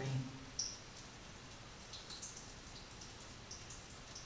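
Quiet room tone in a small room, with a few faint, short high-pitched ticks scattered through it.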